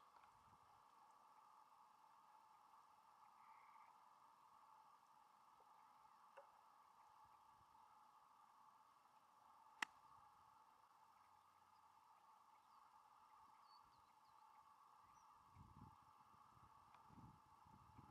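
Golf club striking the ball on a short approach shot: one sharp click just before ten seconds in, over a near-silent background with a faint steady hum.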